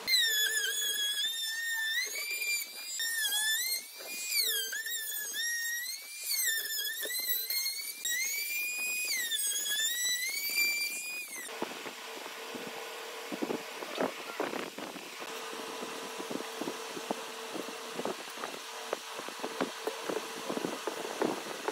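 Handheld trim router whining at high speed as its bit cuts wood, the pitch dipping under load and recovering again and again. It cuts off suddenly about eleven seconds in, and a quieter hiss with light scrapes and ticks follows.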